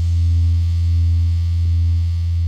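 A single deep electronic bass note, held steady and loud after the beat stops: the final note of a rap track ringing out.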